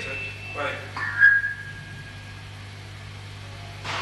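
Steady low electrical hum from idle guitar and bass amplifiers. Early on there is a brief bit of voice, then about a second in a single high tone rings out and fades away over about a second; a short sharp noise comes near the end.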